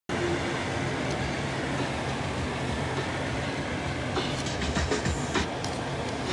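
Steady road noise inside a moving car's cabin, a low drone of tyres and engine at highway speed, with a few light clicks or rattles in the last two seconds.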